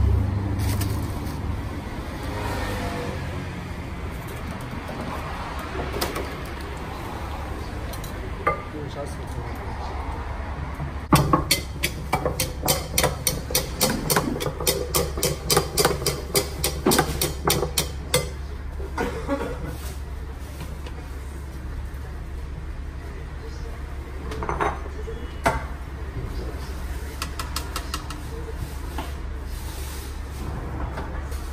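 Metal spoon clinking and scraping against a ceramic bowl as foul is stirred and mashed. There are a few scattered clinks, then a rapid run of them, several a second, for about seven seconds midway, over a steady low hum.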